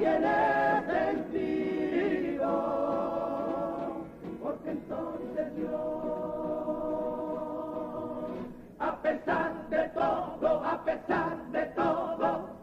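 A carnival comparsa's male choir singing in close harmony. A long chord is held through the middle, then the singing breaks into a quicker passage with sharp rhythmic accents near the end.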